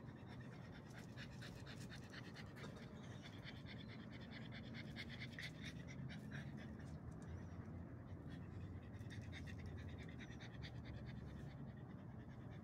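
A pug panting quickly in a steady run of short breaths.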